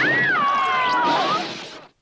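A high cartoon voice crying out in one long wail that jumps up in pitch, slides down and holds, over a noisy soundtrack, then fades out just before the end.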